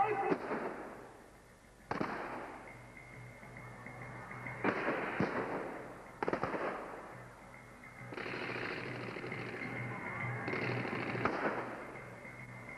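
Staged gunfire and pyrotechnic blasts: about eight sharp bangs a second or two apart, each with a long echoing decay.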